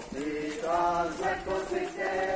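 People singing together, with several long held notes.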